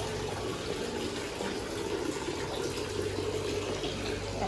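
Water from a courtyard wall fountain splashing steadily into its basin.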